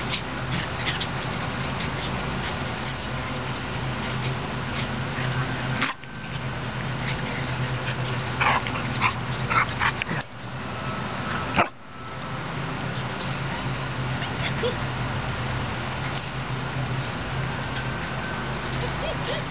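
Black Borador puppies (Border Collie–Labrador crosses) giving short yips and whimpers in scattered bursts, busiest around the middle, over a steady low hum.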